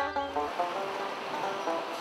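Banjo picking, a run of plucked notes that stops about half a second in, giving way to a steady rushing hiss of surf.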